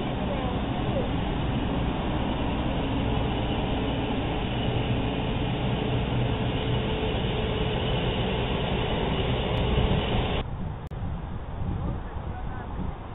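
Steady outdoor background rumble and hiss, like traffic nearby, with a faint steady hum in the middle. It drops suddenly to a quieter ambience near the end.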